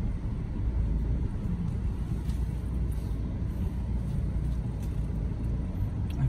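Steady low rumble of a Mitsubishi car's engine running, heard from inside the cabin.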